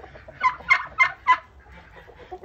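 A turkey calling four short notes in quick succession, about three a second, in the first second and a half.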